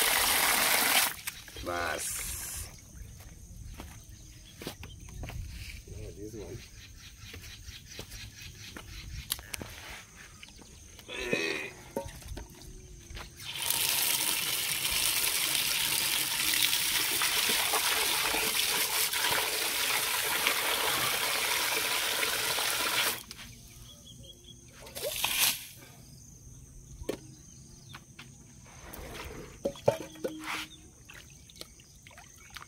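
Water from an outdoor tap gushing into a plastic basin where meat is being washed by hand, then stopping about a second in; a quieter stretch of small splashes and handling follows. About fourteen seconds in, the tap runs again for about nine seconds, filling a metal cooking pot, then stops.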